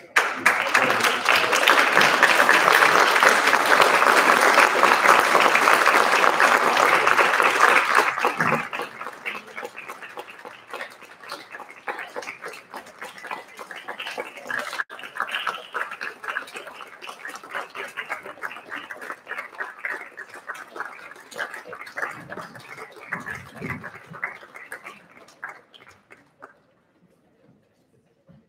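Audience applauding, loud for the first eight seconds or so, then carrying on more quietly until near the end.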